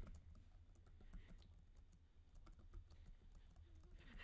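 Computer keyboard typing, faint, a run of irregular quiet key clicks.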